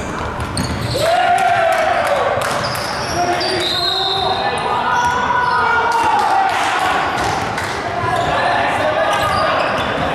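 Basketball game play on a hardwood gym court: the ball bouncing as players dribble, with players' voices in the large hall.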